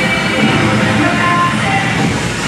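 Cheerleading routine music mix played loud over arena speakers, at a section carrying a voice sample over a rumbling, engine-like sound effect.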